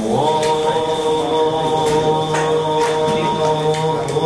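A man chanting, holding one long note that rises briefly at the start and then stays steady.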